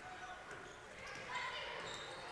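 Faint sound of a basketball being dribbled on a hardwood gym floor during play, with faint voices in the hall.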